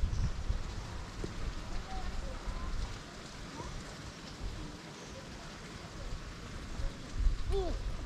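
Outdoor background of faint, scattered voices over a steady hiss, with a low rumble on the microphone that is stronger at the start and again near the end.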